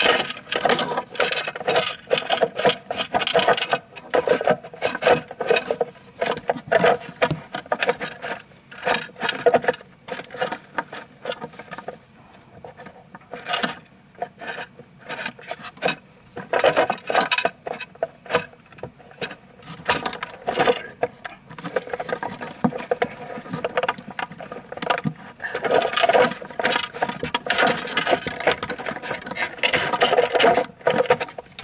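Plastic parts and the sheathed Bowden tube being handled and pushed into place inside a Tiko 3D printer's enclosure: irregular rubbing, scraping and clicking, easing off for a few seconds about halfway.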